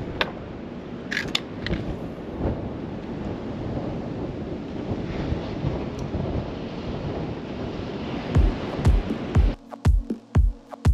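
Steady wind and surf noise, as heard on a fishing pier over the sea. Near the end, electronic dance music comes in with a steady kick-drum beat of about two beats a second.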